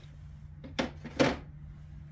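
A few short metallic clicks and a brief scrape as a socket wrench is worked on the distributor hold-down of a Ford flathead V8, over a steady low hum.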